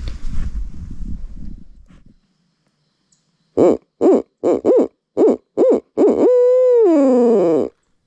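Barred-owl hooting, loud and close: six short rising-and-falling hoots, then one long drawn-out hoot that drops away at the end, starting a little over three seconds in. Before it there is a low rumble on the microphone that fades out by about two seconds.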